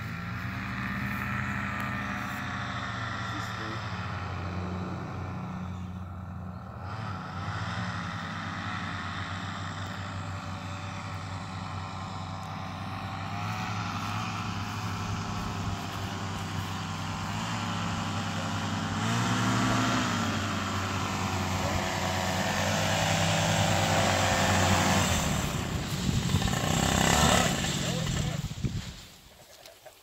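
Blackhawk 125 paramotor's two-stroke engine running under throttle during a launch run, revving higher about two-thirds of the way through, then cutting out a few seconds before the end, followed by a short noisy stretch and a sudden drop in level.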